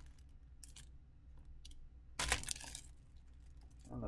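Clear plastic kit bag crinkling and rustling as the plastic model sprues inside it are handled, with a louder crinkle about two seconds in.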